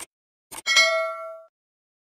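Subscribe-button sound effect: quick clicks, then a bright bell-like ding that rings out for about a second.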